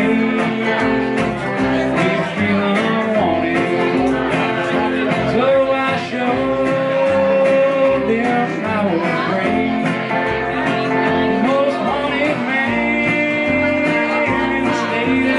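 A live country band playing: an electric guitar and a strummed acoustic guitar over a plucked upright double bass keeping a steady pulse.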